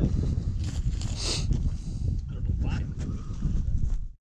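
Steady low rumble of wind buffeting the microphone outdoors, with brief indistinct voices.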